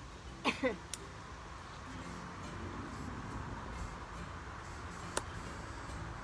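Tomato stems and leaves snapped off by hand while the plant is pruned: two sharp snaps, one about a second in and one near the end. A short falling cry comes about half a second in and is the loudest sound, over a steady low background hum.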